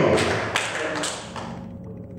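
A few light taps in the first second, then a quiet hall with a faint steady hum.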